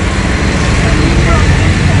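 A loud, steady low rumble of outdoor background noise, with faint voices in the background.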